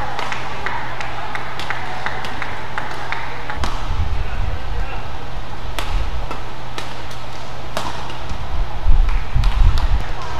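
Badminton rally: rackets striking the shuttlecock in short, sharp cracks at irregular intervals, with voices in the hall. Low thumps come in partway through and are loudest near the end.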